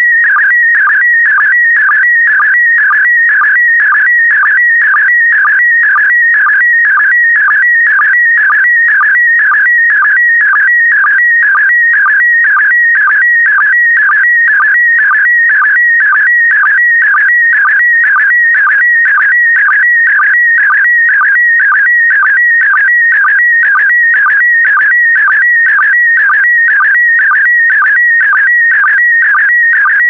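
PD120 slow-scan television (SSTV) signal: a loud, high, warbling electronic tone whose pitch shifts constantly with the picture's brightness, with a short sync chirp repeating about twice a second as each pair of image lines is sent.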